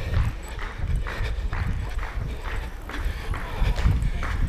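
The rhythm of a runner on the move: footfalls on asphalt and breathing, about two pulses a second, over a low wind rumble on the camera's microphone.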